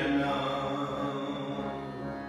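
Sikh shabad kirtan: harmoniums hold steady reed chords under a man's sung chant.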